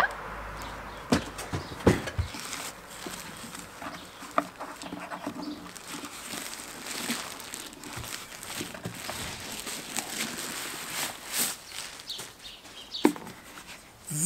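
Cardboard box knocking a few times as it is lifted and set aside, then a plastic bag crinkling and rustling as it is handled and pulled off a portable power station.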